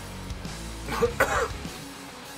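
A person coughs and clears their throat in a short burst about a second in, over steady background music.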